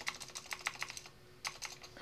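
Computer keyboard keys pressed in quick succession: a flurry of clicks, a pause of about half a second, then another run of keystrokes.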